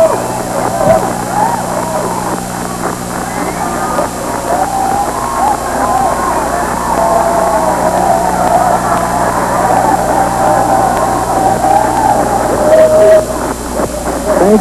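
A club crowd cheering and clapping after a song, many voices calling out over the applause. A steady low hum from the old recording runs underneath.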